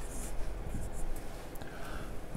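Marker pen writing on a whiteboard: faint, uneven scratching strokes as letters are drawn.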